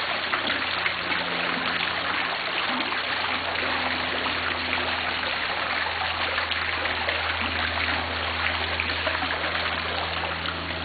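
Fountain water splashing and trickling steadily.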